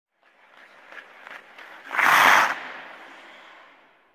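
Intro logo-reveal sound effect. A rising noisy swell with a few sharp clicks builds to a loud burst about two seconds in, then fades away over the next second and a half.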